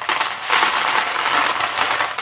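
Expanded clay pebbles (LECA) rattling and crunching against each other and a plastic pot as an orchid's root ball is pulled out of its semi-hydro pot, with pebbles spilling into a plastic tub. The rattle is dense and continuous.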